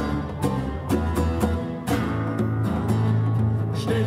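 Live band playing an instrumental intro: acoustic guitar strumming over electric guitar, bass and congas. About two seconds in the rhythmic strokes give way to held chords over a steady bass note, and a sung line begins at the very end.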